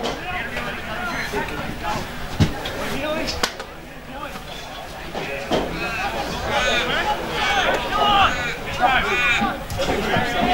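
Indistinct voices of players and spectators calling and shouting around an Australian rules football ground, louder and higher-pitched in the second half. There are two sharp knocks a second apart, early in the clip.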